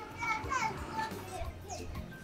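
Faint, distant children's voices over background music.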